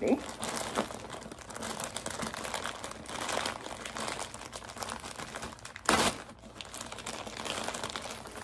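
Plastic poly mailer bag crinkling as it is handled and pulled open, with one short, louder crackle about six seconds in.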